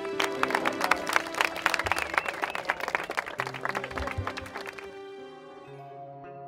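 A group of people clapping over soft background music; the applause thins out and stops about five seconds in, leaving the music.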